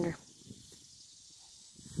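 Quiet outdoor background with a faint, steady high-pitched insect trill, just after the last syllable of a spoken word.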